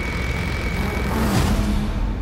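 Horror film trailer soundtrack: loud, dense music and sound-effect noise with a steady high tone that stops about a second in, then a sweeping hit about a second and a half in.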